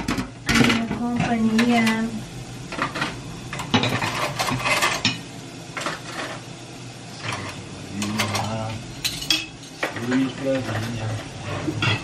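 Irregular clinks and knocks of pots, dishes and utensils being handled at a kitchen counter during cooking, with a few short hums from a voice.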